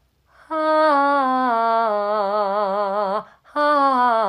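A woman singing a held 'ha' vowel with a wooden tongue depressor holding her tongue down, an exercise to keep the tongue low and ease tongue tension in singing. The long note steps down in pitch and settles into vibrato. A second 'ha' begins about three and a half seconds in and glides down.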